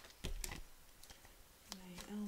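A few light, sharp clicks in the first half-second, then quiet, then a steady hummed 'mm' from a woman's voice starting near the end.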